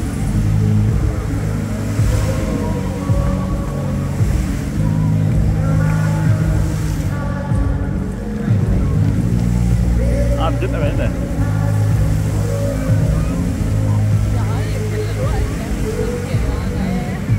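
Show music from a musical fountain's loudspeakers, with deep sustained low notes and held melody tones, mixed with the rushing spray of the fountain's water jets.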